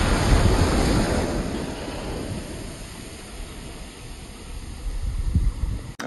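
Small waves breaking and washing up onto a sandy beach. The surf is loudest at first and fades over a few seconds, then the next wave builds near the end.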